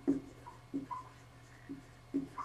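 Dry-erase marker writing on a whiteboard: a series of short, irregular strokes with a couple of brief squeaks.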